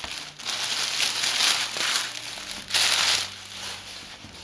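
Thin clear plastic bag crinkling and rustling as hands pull a pair of rubber sandals out of it, in several bursts with the loudest near three seconds in.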